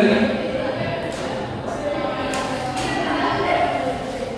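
A man's voice speaking quietly, with no clear words, in a large room.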